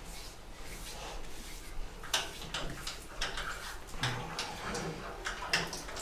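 A hand rubbing toothpaste onto a pig's skin: soft, scattered rubbing and scuffing, with a few short low sounds from the pen.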